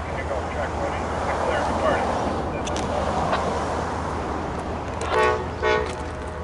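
Amtrak passenger train's locomotive horn sounding two short blasts close together near the end, against a steady background rush.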